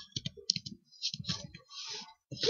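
Typing on a computer keyboard: quick key clicks in a few short runs, as a search is typed in.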